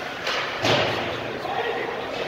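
A single heavy thud against the boards of an ice hockey rink, just over half a second in, echoing through the arena, over the voices of players and spectators.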